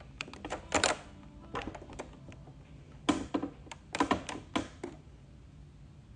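A run of quick, irregular clicks and light knocks in two clusters, one near the start and a longer one about three seconds in.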